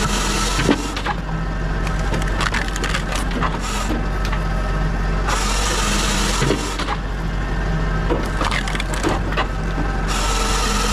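Pilkemaster firewood processor running steadily while it cuts and splits logs, with sharp cracking and splintering of wood and the clatter of split pieces. Two longer rushes of noise come through, one at the start and one just past the middle.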